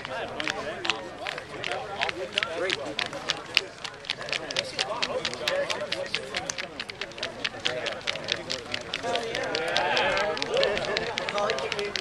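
Indistinct talk from a sports team's huddle: several voices talking quietly, too muffled to make out, with many short sharp clicks scattered through it.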